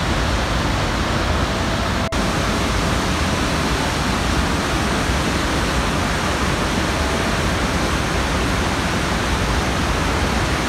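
Steady roar of a waterfall and the whitewater torrent below it, full-bodied and unbroken except for a brief break about two seconds in.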